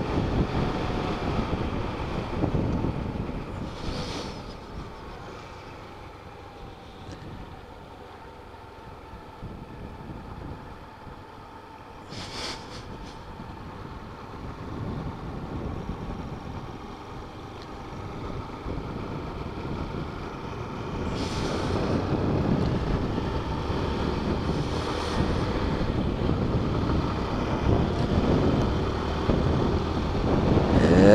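Motorcycle being ridden on a highway: engine running under wind rushing over the microphone. The sound drops away as the bike slows for several seconds and builds again from about two-thirds of the way through as it picks up speed.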